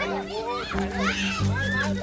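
Several excited, high-pitched voices calling out over a background music track with a steady beat.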